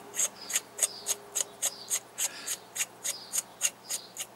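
Threaded metal bottom cap being screwed onto a Wizard's Apprentice Evolved II tube mod by hand: a run of short, scratchy rasps, about four a second, one with each twist of the fingers.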